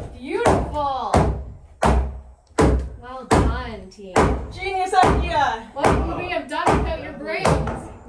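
Mallet knocking a pine gable board down into its notches: a steady series of sharp wooden knocks, about one every half second to second, with laughing voices between the strikes.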